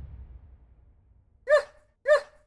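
The low rumble of an intro sound effect fading out, then a single short, high dog bark, like a small dog's yip, about one and a half seconds in.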